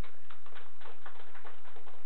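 Applause from a small audience: a dense run of individual hand claps that thins out near the end.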